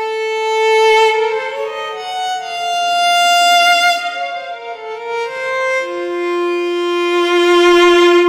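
Virtual solo violin played from a Lumatone keyboard: a slow line of held, overlapping notes that climbs and then settles on a long low note about six seconds in. Its loudness swells under the mod wheel, and vibrato is added from a neighbouring key set as a continuous controller.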